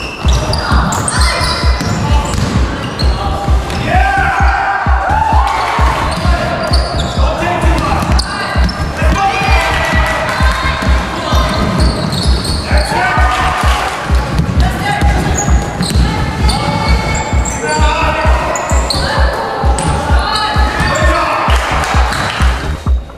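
Voices calling and shouting over a steady, evenly repeated low thumping that runs throughout.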